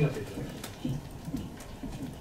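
Speech only: a man's drawn-out word at the start, then faint short low voice sounds over room tone.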